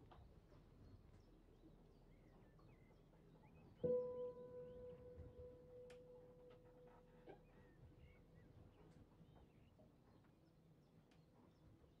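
Faint outdoor birdsong ambience with small high chirps throughout; about four seconds in a single soft piano note is struck and slowly dies away.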